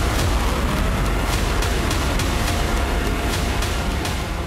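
Missile rocket motor firing at launch: a loud, steady, dense rushing noise with a heavy low rumble.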